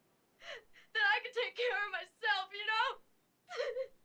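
A woman crying hard, sobbing in several wavering, breaking bursts of voice with short gaps between them.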